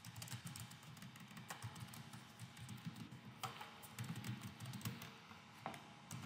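Typing on a computer keyboard: a quiet, irregular run of keystroke clicks.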